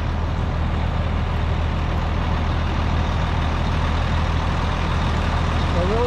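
Heavy diesel engine running steadily at a constant speed, a low, unchanging drone with no revving.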